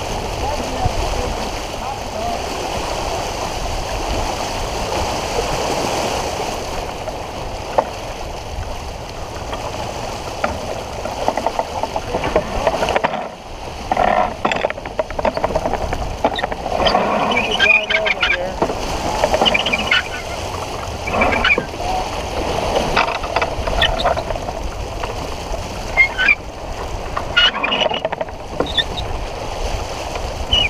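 Wind buffeting the microphone and water rushing past the hull of a sailboat under way, a steady rushing noise. From about halfway through, crew voices call out over it indistinctly.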